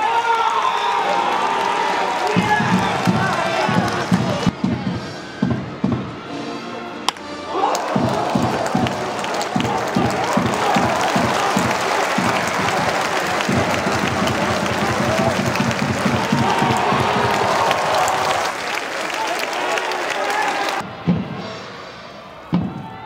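A stadium cheering section: a drum beats steadily about three times a second under band music and crowd chanting. It breaks off briefly a few seconds in and fades near the end.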